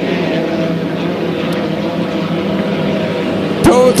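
Engines of 1.5-litre class racing hydroplanes running flat out, a steady drone of several held tones. A man's voice comes in near the end.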